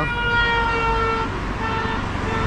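Vehicle horn honking: one long steady blast of a little over a second, then a shorter second honk near the end, over road traffic rumble.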